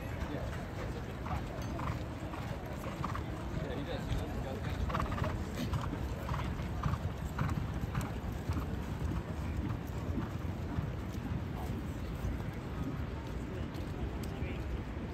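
Hoofbeats of racehorses and lead ponies walking on a dirt racetrack, a steady clip-clop that is loudest about five to eight seconds in.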